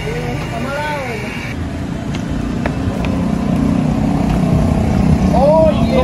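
Steady low rumble of outdoor street noise that grows louder over the last few seconds.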